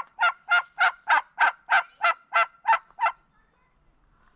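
White domestic turkey calling: a run of about eleven evenly spaced notes, roughly three a second, that stops a little after three seconds in.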